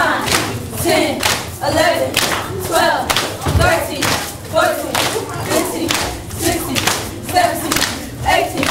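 A group of girls calling out a count together in time with jumping jacks, with feet landing on a wooden floor and hand claps, about two beats a second.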